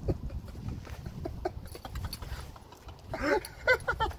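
A man laughing in a string of loud, pitched bursts starting about three seconds in, over a low rumble.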